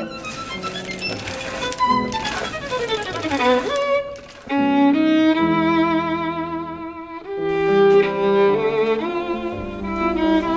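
Background music on violin. A downward slide ends a little before four seconds in; after a short dip, the violin plays held notes with vibrato over lower sustained string notes.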